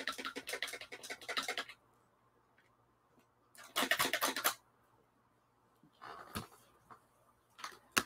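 Paintbrush being rinsed in a water jar: rapid tapping and clattering in short bursts, a longer run at the start and another about four seconds in, with a couple of brief taps later.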